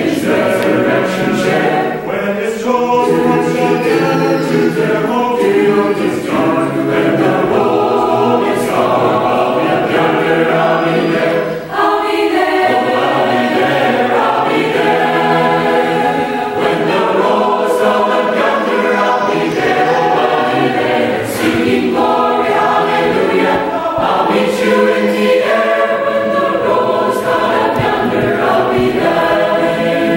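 Large mixed choir of men's and women's voices singing together in harmony, with a brief drop in level about twelve seconds in.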